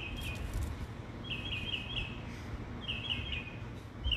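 A bird calling in three short phrases of rapid, high repeated chirps, about a second and a half apart, over a low steady background rumble.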